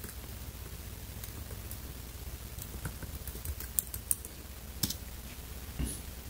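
Laptop keyboard typing on a MacBook Air: scattered single keystrokes, some louder than others, with a slightly heavier tap near the end.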